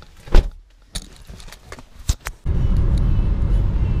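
A car door shuts with a loud thump, followed by a few small clicks and knocks. About two and a half seconds in, a steady low rumble of road and engine noise inside a moving car's cabin starts abruptly.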